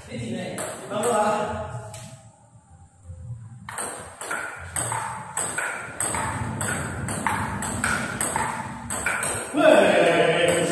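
Table tennis rally: the ball clicking off the paddles and the table in quick alternation, a sharp hit every half second or so, beginning about four seconds in.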